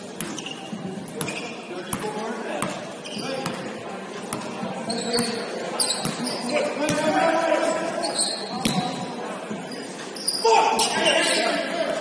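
Basketball bouncing on a hardwood gym floor, the bounces echoing through a large hall, with sneakers squeaking and players calling out; a loud burst of shouting comes near the end.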